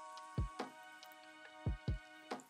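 Soft background music: held electronic chords over a kick drum beat.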